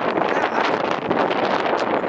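Wind blowing on the microphone: a steady, fairly loud noise that does not let up.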